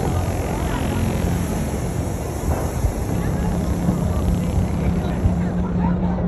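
A steady low rumble, with people talking faintly.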